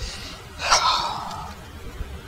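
A person's breathy sigh a little after half a second in, fading away over most of a second.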